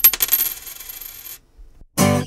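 A coin dropped on a hard surface: a sharp first strike, then a quick run of bounces and a high metallic ring that fade out after about a second and a half.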